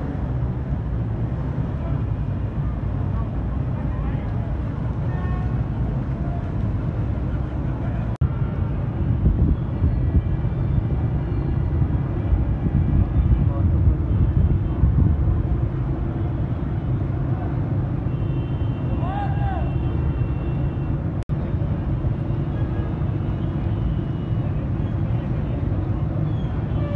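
Outdoor street ambience on a flooded road: a steady low rumble with indistinct voices in the background. It breaks off abruptly twice, about 8 and 21 seconds in.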